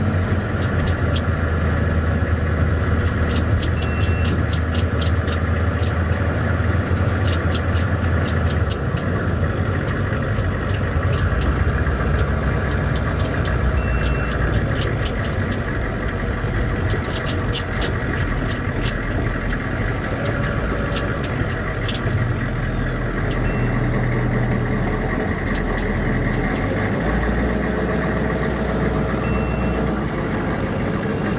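A vehicle's engine running steadily as it drives over a rough, rubble-strewn road, heard from inside the vehicle, with scattered clicks and rattles. The deep engine hum changes about a third of the way in, and a few brief high beeps sound now and then.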